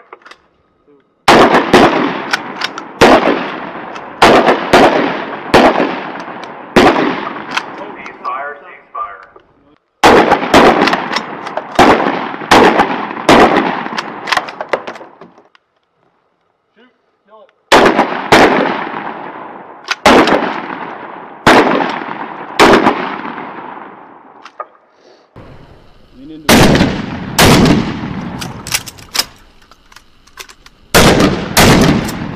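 Rifle fire from a firing line: single shots fired in quick, irregular strings, often about two a second, each crack trailing off in a ringing echo. The firing comes in three main runs with short lulls of a second or two between them, and a shorter run near the end.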